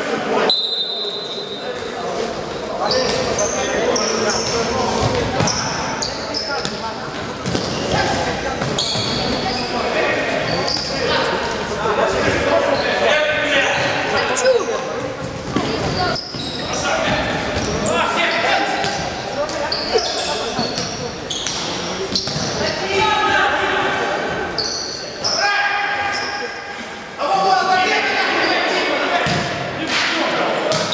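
Futsal ball kicked and bouncing on a wooden gym floor, with players shouting and calling to each other, all echoing in a large sports hall.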